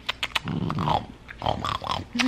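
A small dog making low throaty noises while being hugged and kissed, with a few short smacks at the start.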